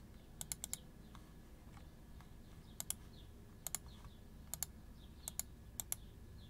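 Computer keyboard clicking quietly in short pairs and clusters: a quick run of four clicks about half a second in, then a pair roughly every second from about halfway on.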